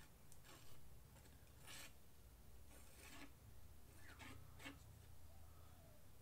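Faint scraping of a metal palette knife spreading acrylic paint across a canvas, in a handful of short strokes.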